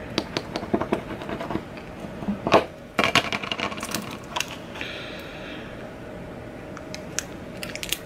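Small plastic burnishing tool rubbing vinyl transfer tape onto an acrylic keychain, with scattered small clicks and taps as the keychain and tape are handled. A short scratchy rubbing sound comes about five seconds in.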